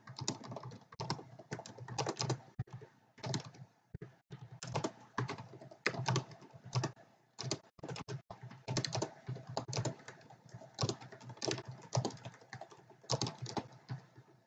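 Typing on a computer keyboard: irregular runs of quick keystrokes, with short pauses between them.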